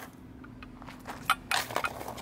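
A few short crunches of footsteps on gravel, starting about one and a half seconds in after a quiet stretch.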